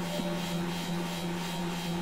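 Synthesizer drone: a steady low tone with quieter held tones above it, under a hiss that swells and fades in a regular rhythm.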